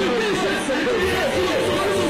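Many overlapping voices chattering, layered over the steady held tones at the opening of a song.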